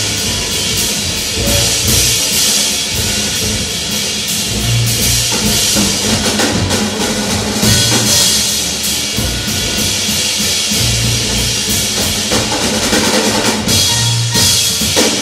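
Live jazz combo playing, the drum kit loud with busy cymbals and snare hits over a low bass line.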